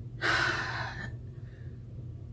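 A woman drawing one audible breath, lasting under a second, shortly after the start, over a steady low hum.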